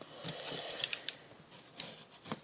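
White cardstock note card being folded and its crease pressed with a bone folder: soft paper rustling with a few short, crisp scrapes and ticks.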